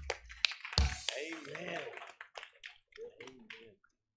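The band's last note cuts off at the start. Scattered hand claps and a few voices calling out from the congregation follow, and they die away shortly before the end.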